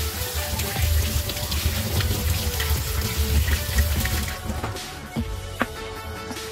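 Kitchen tap running into a stainless steel sink as small rubber brake-caliper boots are rinsed under the stream; the water stops about four seconds in. Background music plays throughout.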